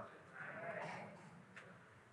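Quiet room with a faint, brief voice-like sound in the first half, then near silence.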